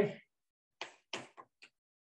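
Three short scratchy strokes of chalk on a blackboard, a little under a second apart.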